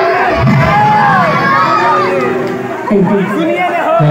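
A crowd of voices calling out and chattering at once, with amplified speech over the stage PA among them. A steady held tone sounds briefly around the middle.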